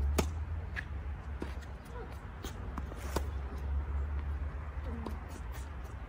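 Tennis rally on a hard court: a crisp racket strike on the serve right at the start, then scattered sharp pops of ball on racket and ball bouncing, a second or so apart, over a steady low rumble.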